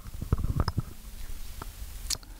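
Handling noise from a handheld microphone being passed from one person to another: a quick cluster of low thumps and clicks in the first second, and one more thump near the end.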